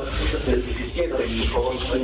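A man's speech, muffled and indistinct, with a rubbing noise over it.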